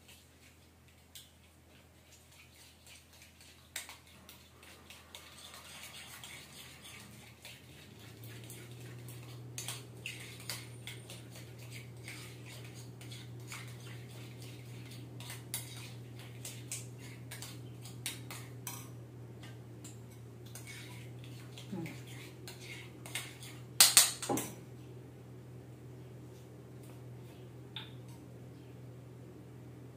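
A spoon clinking and scraping against a small bowl as a mixture is stirred, in scattered light clicks, with a louder clatter about three-quarters of the way through. A steady low hum comes in about eight seconds in.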